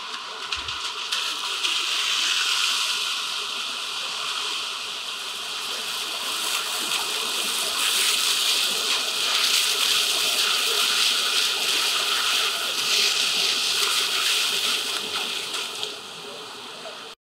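Hiss of car tyres on a rain-soaked road as a line of cars drives past, growing louder about two seconds in, easing off in the middle and swelling again for most of the second half.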